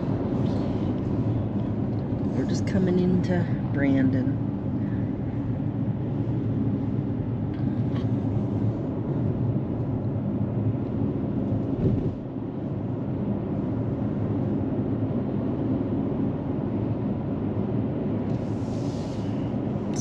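Steady road and engine noise heard inside a moving car's cabin, with brief low talking about two to four seconds in.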